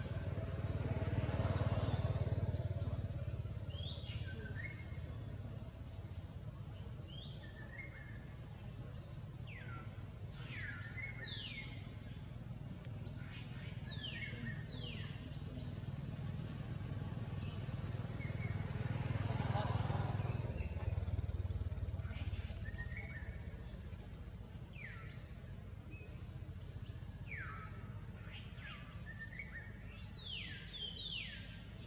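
Outdoor ambience in which a motor vehicle, motorcycle-like, passes twice: its low hum swells a couple of seconds in and again a little past the middle. Throughout, short high calls sweep sharply downward in pitch, one after another at irregular intervals.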